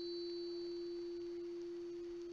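Tuning fork on a wooden box ringing after being struck: one clear, pure, steady tone that fades only slowly, the sign of its low damping, which lets it hold its note for a long time.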